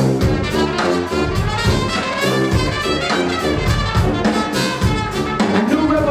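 Brass band playing live: trumpets, trombone and saxophone over a drum kit keeping a steady beat.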